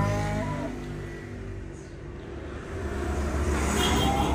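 A Simmental bull gives a short low moo at the start. Then a truck's engine rumbles past on the road, growing louder over the last second or so.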